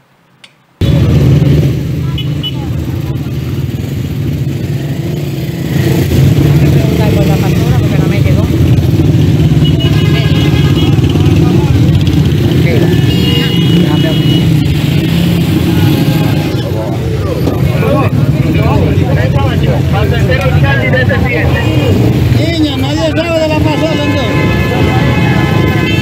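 Street sound starting about a second in: bystanders' voices over a loud, steady low rumble of motorcycle and car engines running close by.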